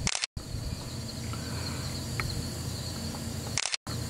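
Steady high insect trill, with a low background rumble, cut by two brief dropouts to silence near the start and near the end.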